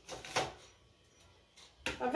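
A brief crinkle of a plastic biscuit packet being handled, lasting about half a second. A sharp click follows just before the end.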